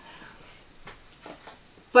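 A pause between a woman's spoken sentences: quiet room tone with a few faint, short soft sounds about a second in. Her voice starts again right at the end.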